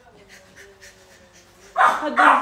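A baby fussing: a faint, drawn-out whimper, then loud crying starting near the end.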